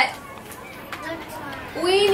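Quiet background chatter of young children in a classroom, with the teacher's voice starting again near the end.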